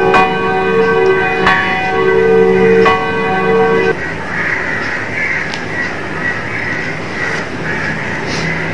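A bell tolled for the elevation of the host at the consecration. It gives three strokes about a second and a half apart, each ringing on with several steady tones, and the ringing stops abruptly about four seconds in.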